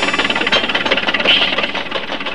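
A small vintage car's engine running with a rapid, even rattle, the puttering engine sound of a toy-sized car.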